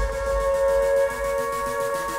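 Jumpstyle electronic dance track in a breakdown: a sustained synth chord holds steady tones while the deep bass fades away, over a faint fast ticking in the highs.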